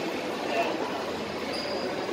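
Shopping-mall background noise: a steady hum of indoor ambience with faint, indistinct voices. A faint high tone sounds briefly near the end.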